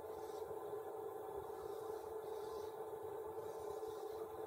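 Steady low hum of room tone, with faint scratching from a dry-erase marker drawing lines on a whiteboard.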